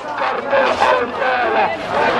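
Dense crowd of male protesters shouting and talking over one another close around the microphone, many voices at once with no break.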